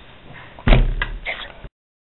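A loud heavy thump about two-thirds of a second in, followed by two lighter knocks, over a faint hiss that cuts off suddenly.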